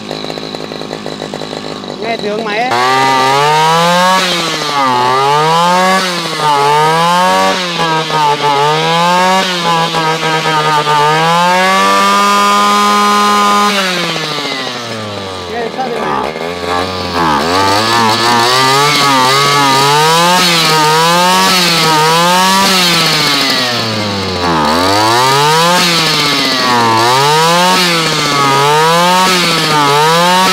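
Stihl FR3001 backpack brush cutter's two-stroke engine running with no load. It idles at first, then is revved up and down about once a second, held at high revs for a couple of seconds near the middle, dropped back to idle, and revved again.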